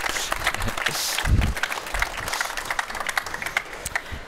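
Audience applauding: a dense patter of many hand claps, with a brief low thud about a second and a half in.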